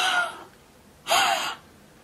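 A woman gasping: a voiced exclamation trails off, then a short, breathy gasp comes about a second in.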